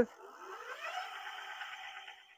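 Electric motor of a Megawheels EB01 fat-tire e-bike spinning the wheel up with no load: a whine that rises over the first second, then runs steady at speed.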